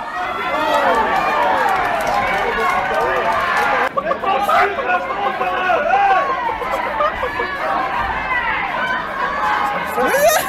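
Fight crowd at a kickboxing bout: many spectators' voices talking and shouting over one another without let-up.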